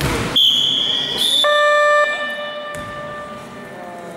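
A steady, high, piercing whistle tone held for about a second, followed by a lower electronic buzzer tone that is loud for about half a second and then fades out, about the sound of a referee's whistle and a scoreboard horn in a basketball game.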